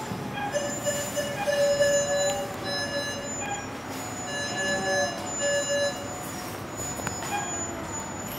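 A baby crying in long, high wails that rise and fall in pitch, loudest about two seconds in. The baby is scared while being held down for anesthesia induction.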